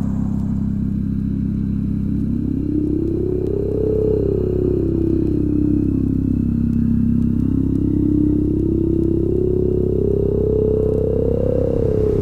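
A car driving, with a steady low engine and road rumble. The engine pitch slowly climbs, drops back, then climbs again near the end.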